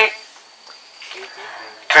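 Crickets trilling in one steady, high, thin tone, with a man's voice briefly at the start and again near the end.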